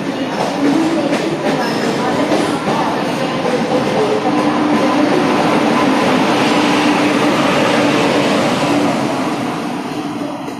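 An LHB-coached electric express train running past close to a platform: steady rumble and wheel clatter over the rail joints, with a low steady hum. The trailing WAP-7 electric locomotive goes by near the end, and the sound starts to fade.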